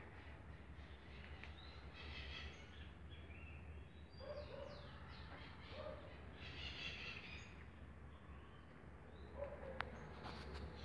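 Faint birds chirping in the background, short calls and quick sliding notes scattered through, over a steady low hum. A small click near the end.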